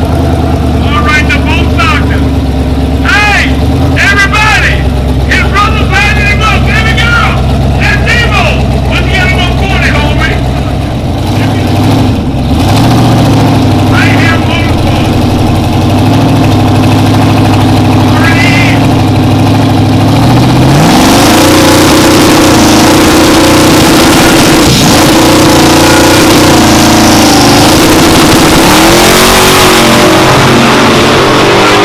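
Drag-race car engine, a box-body Chevrolet Caprice, running at a low idle under shouting crowd voices, then revved up about two-thirds through and held at high rpm with a loud rushing noise. It rises again near the end as the car launches.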